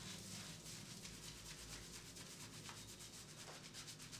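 Fingers scrubbing shampoo lather into short hair on the scalp: faint, soft, wet rubbing strokes in a fast, even rhythm.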